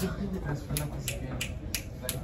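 Fingers snapping in a steady rhythm, about three snaps a second, starting a little under a second in, over stifled laughter.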